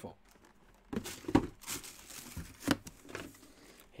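Plastic packaging crinkling and rustling as it is handled, with a few sharp clicks and knocks, starting about a second in.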